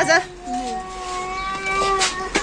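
A door's hinges creaking in one long, steady squeal, rising slightly in pitch, as the door swings open.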